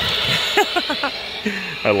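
Motion-activated furry spider Halloween animatronic lunging up, letting out a steady hiss that starts suddenly with a click.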